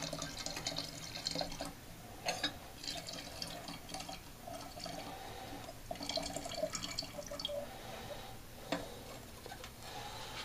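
Sparkolloid fining solution poured into a glass carboy of wine, trickling and splashing into the liquid on and off.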